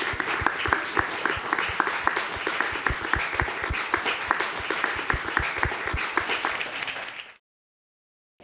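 Studio audience applauding, many separate hand claps over a steady clapping haze, fading out about seven seconds in to silence.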